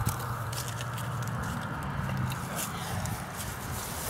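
Steady low hum with a fan-like hiss from an outdoor air-conditioning condenser unit, with faint clicks and scrapes of loose bricks being shifted by hand.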